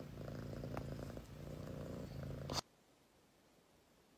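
Domestic cat purring, faint and steady, which stops abruptly about two and a half seconds in.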